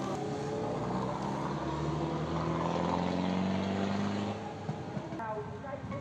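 Motorbike engine running on a busy street, its pitch slowly rising, with voices in the street noise. After about four seconds it gives way to quieter open-air background with one sharp click.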